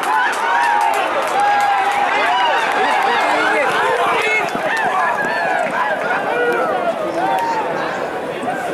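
Crowd of spectators shouting and cheering during a horse race, many voices overlapping without a break.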